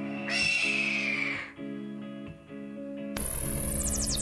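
Live rock band playing: sustained guitar and keyboard chords, cut by a short, harsh, falling squeal about half a second in. The full band comes back in with a crash about three seconds in.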